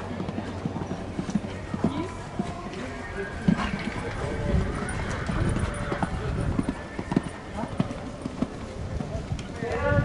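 Horse's hoofbeats at the canter on a sand arena surface, a run of muffled thuds, with background voices.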